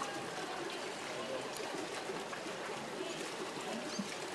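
Pool water splashing and trickling at the edge of a swimming pool as a child climbs out up the stepladder, with faint children's voices behind.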